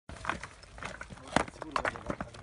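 Irregular knocks and clatter of earthquake rubble being shifted by hand, with short fragments of low voices.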